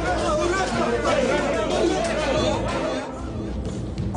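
Many men's voices talking and calling over one another, the chatter of a packed crowd of prison inmates, over background music. The voices stop abruptly about three seconds in, leaving only the music.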